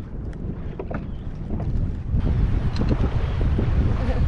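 Wind buffeting the microphone on the deck of a small sailboat, with water moving around the hull. The wind noise grows louder about two seconds in.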